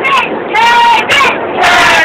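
A group of people shouting loudly in drawn-out calls, several in quick succession.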